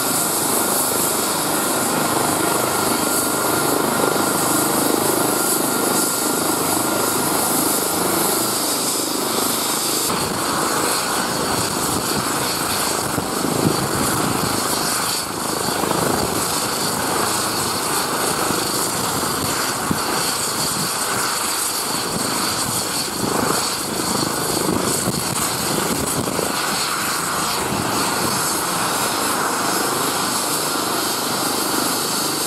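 Airbus Helicopters EC135-family rescue helicopter running on the ground with its main rotor turning: a steady mix of turbine whine and rotor noise. A thin steady whine tone stops about eight seconds in while the rest runs on.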